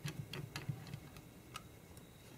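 A few faint, irregular clicks from a fine Phillips precision screwdriver turning tiny screws out of a camera's flip-out display back plate.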